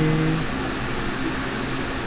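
A fan-driven room appliance running with a steady hum and rush of air, with the tail of a spoken word in the first half second.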